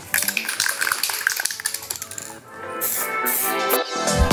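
Aerosol can of clear lacquer being shaken, its mixing ball rattling rapidly for about two seconds, with background music that grows and takes over in the second half.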